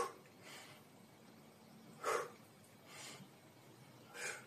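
A man breathing hard in time with dumbbell curls. Two sharp breaths out, one at the start and one about two seconds in, are each followed by a softer breath in.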